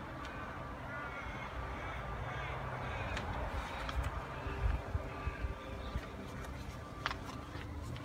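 Quiet outdoor background noise with a steady low hum, a few faint distant calls about two seconds in, and some low bumps on the handheld microphone near the middle.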